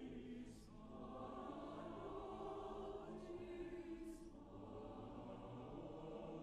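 Mixed chorus singing softly in sustained, held chords, with two brief hisses of consonants, about half a second in and again near four seconds in.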